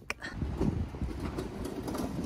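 A metal cage trolley loaded with large cardboard boxes being pushed over paving stones: a steady, low, rattling rumble that starts just after a short click.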